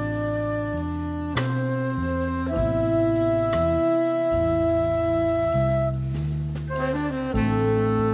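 Jazz music: a melody of long held notes over a bass line that steps to a new note every second or so.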